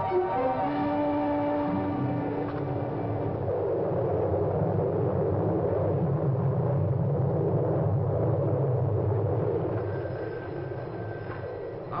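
A short music cue of held chords for about the first three and a half seconds, then a steady, low rumbling wind noise, a tornado sound effect on an old film soundtrack, easing off near the end.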